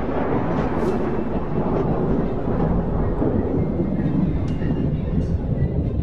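A dense, low, steady rumbling drone from the cinematic outro soundtrack, with a few faint high ticks scattered through it.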